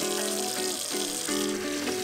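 Background music with a simple melody of short, stepping notes, and a kitchen tap running water into a steel sink underneath it.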